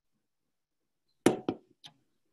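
An aluminium drink can being set down on a table: a sharp knock, a second one a quarter second later and a faint tap near the end.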